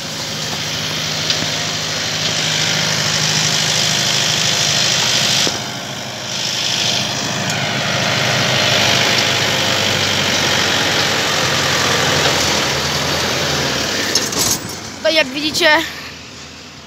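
Zetor Major 80 tractor engine running steadily under load as it pulls a seed drill and cultivator through dry soil, with a strong steady hiss over it. The sound drops briefly about six seconds in.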